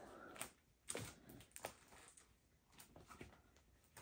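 Near silence: room tone with a few faint, short clicks.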